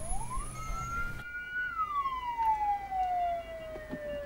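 Ambulance siren wailing through one slow cycle: the pitch rises quickly in the first half second, holds high, then falls slowly over about two and a half seconds.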